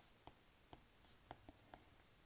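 Faint taps of a stylus on a tablet's glass screen while handwriting letters: about seven light, irregular ticks.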